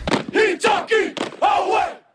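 A team of high-school football players shouting a haka-style war chant in unison, in several loud shouted phrases that stop just before the end.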